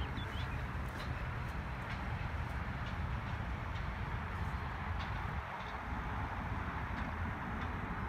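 Steady outdoor background noise, mostly a low rumble, with a few faint ticks.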